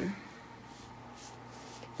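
Soft brushing of a paintbrush spreading shellac-based primer over a wooden dresser panel, faint against a low steady hum.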